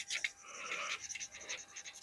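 Marker scratching on a paper crystal-tree cutout as it is coloured in, in short, irregular strokes.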